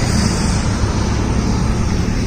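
Steady rush of wind and rumble on the microphone, with vehicle noise mixed in.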